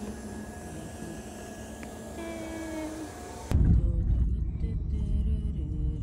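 Quiet background with faint music, then about three and a half seconds in a sudden change to the low, steady rumble of a car driving inside its cabin, with music still faintly over it.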